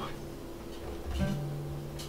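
Strings of a freshly restrung Gibson J-45 acoustic guitar being stretched in: a low string rings out, and about a second in a plucked string sounds a steady note.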